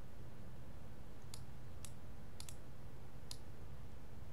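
Computer mouse clicks: five short, sharp clicks spread over about two seconds, two of them in quick succession like a double-click, over a faint steady low hum.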